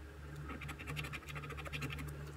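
Edge of a coin scraping the latex coating off a scratch-off lottery ticket in quick repeated strokes.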